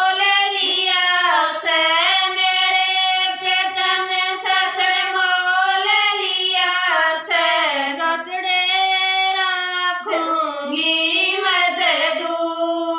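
Women singing a Haryanvi folk song together, unaccompanied, in long held notes that slide up and down between phrases.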